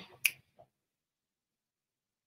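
A single short, sharp click about a quarter second in, followed by dead silence.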